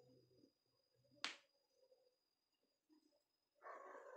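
Near silence, broken by one sharp click a little over a second in and a brief rustle near the end.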